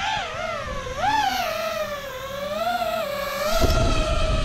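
Whine of an FPV quadcopter's brushless motors, its pitch rising and falling with the throttle: a quick swoop up about a second in, then an almost steady pitch.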